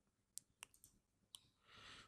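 About four faint, short computer mouse clicks in near silence.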